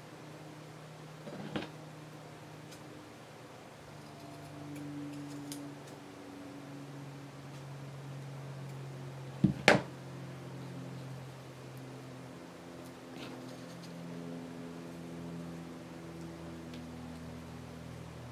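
Quiet handling of lace and paper. Two sharp knocks come close together about halfway through, a metal tool being set down on the cutting mat, over a faint low hum.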